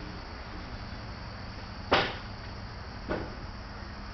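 Two sharp knocks about a second apart, the first louder, over steady background noise.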